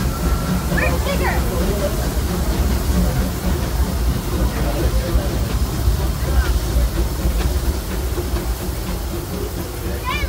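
Disneyland Railroad steam train rolling along the track, heard from an open passenger car: a steady low rumble with people's voices over it.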